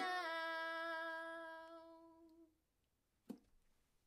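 A woman's voice holding the final note of a folk song over a last ukulele strum, one steady pitch fading out over about two and a half seconds. A single short knock follows a little after three seconds in.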